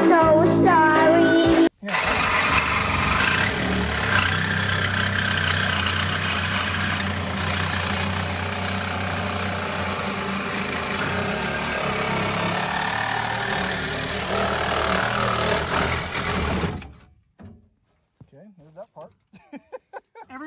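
A brief snatch of children's-commercial music with a child's voice, then, after a sudden cut, a reciprocating saw cutting through a rusty steel car bumper bracket, running steadily for about fifteen seconds before stopping near the end.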